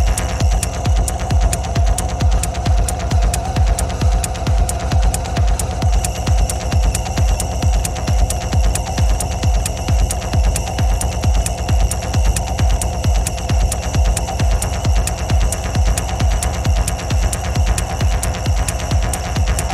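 Hard techno playing: a steady kick drum beat at about two beats a second, with sharp ticks above it and a sustained droning tone.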